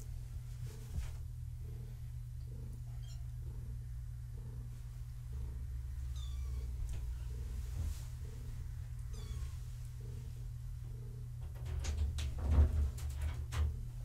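Cat purring in a steady rhythm of about two pulses a second, with a few short, high-pitched kitten mews. A few knocks near the end.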